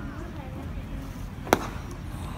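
A pitched baseball smacking into the catcher's leather mitt: one sharp pop about one and a half seconds in, over low crowd murmur.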